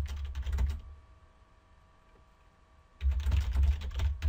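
Computer keyboard typing in two quick runs of keystrokes: one at the start, then a pause of about two seconds, then another run starting about three seconds in.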